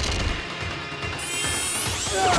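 Film soundtrack sound effects from a creature fight: a fast rattling noise, then a rising, many-toned screech from about a second in, with music underneath.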